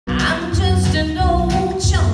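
A woman singing a country song live with music behind her, heard from among the audience in a hall.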